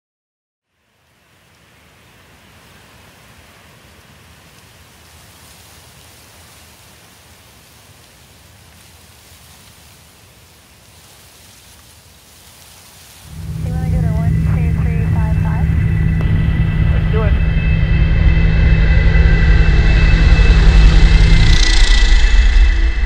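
Faint hiss, then about 13 seconds in the loud, steady drone of a single-engine floatplane's propeller and engine comes in, growing louder as the plane passes low overhead near the end.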